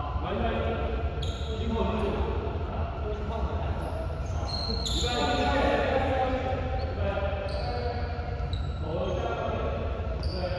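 Basketballs bouncing on a hardwood gym floor, with short high squeaks from sneakers at several points, in a reverberant hall over a steady low hum.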